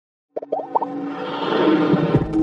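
Intro music for an animated logo: after a brief silence, four or five short pitched blips in quick succession, then a sustained musical swell that builds.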